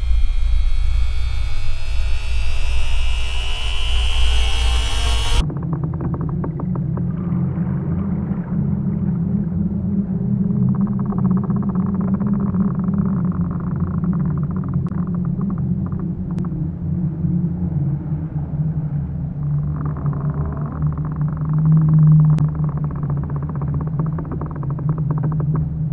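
Low rumbling drone. For the first five seconds a high tone slowly rises over it, then the sound cuts off suddenly into a duller, muffled low drone.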